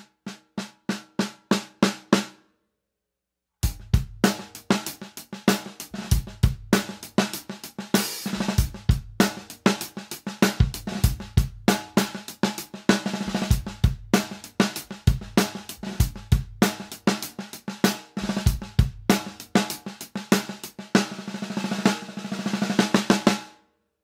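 Five-millimetre steel-shell snare drum fitted with PureSound Concert 12 stainless-steel snare wires, played with sticks. First comes a run of even single strokes that fade out, then a short pause, then about twenty seconds of continuous playing. The loosely coiled wires, tensioned just below the point of choking, buzz under each stroke.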